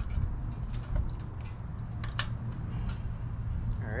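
A few light clicks and taps as a spark plug boot is pushed back onto a small pressure washer engine's plug, the sharpest click about halfway through, over a steady low rumble.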